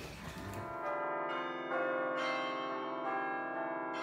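Bell notes begin about a second in, after the room sound cuts off. Several are struck one after another, roughly every half second, each left ringing under the next, as a closing jingle.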